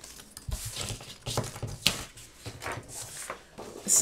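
Sheet of patterned craft paper being handled on a paper trimmer: faint rustling with a few light taps and clicks, one sharper tick about two seconds in.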